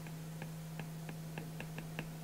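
Stylus tip tapping on an iPad's glass screen while painting short strokes: about half a dozen faint, irregular clicks over a steady low hum.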